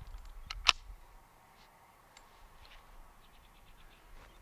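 Metal clicks from a Ruger 10/22 rifle's action being worked as it is loaded: two sharp clicks about a fifth of a second apart, the second much louder, then a few faint clicks and light ticks as the rifle is handled.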